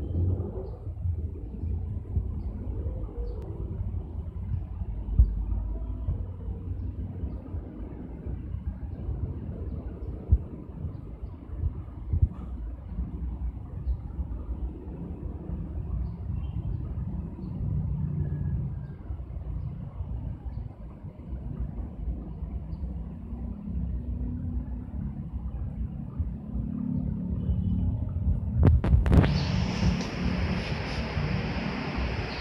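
Low, uneven rumbling noise on the camera microphone throughout, with a louder rush near the end.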